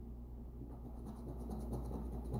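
Large silver coin scratching the coating off a scratch-off lottery ticket: a quick run of faint scraping strokes starting about half a second in.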